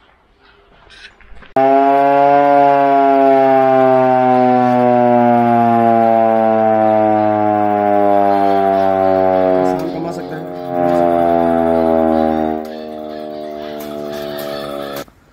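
Hand-cranked mechanical siren wailing. It starts suddenly about a second and a half in, holds one loud tone that slowly sinks in pitch, and turns quieter about a second before the end.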